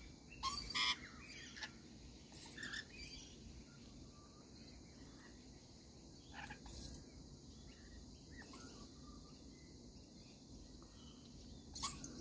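Rainbow lorikeets giving short, high-pitched screeching calls in scattered bursts, five or six of them, with quieter stretches between.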